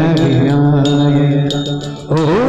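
Marathi devotional abhang: a long sung note held over harmonium accompaniment, with small hand cymbals struck on a steady beat about every 0.7 s. The note fades out just before the end.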